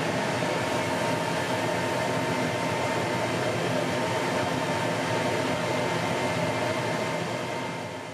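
Creality Falcon 2 Pro 60W enclosed laser engraver running a job: steady whirring from its fans and air-assist pump while the laser fires, fading out near the end.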